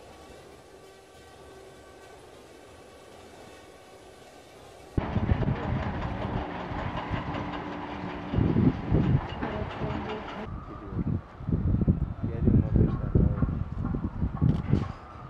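Construction-site ambience: a steady mechanical din with irregular low rumbling gusts, typical of wind buffeting the microphone. It begins abruptly about five seconds in, after a faint steady hum of several even tones.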